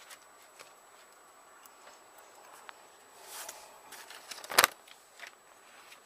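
Hands handling an open coil-bound paper planner: a brief paper rustle a little past halfway, then one sharp knock just after, the loudest sound in an otherwise quiet stretch.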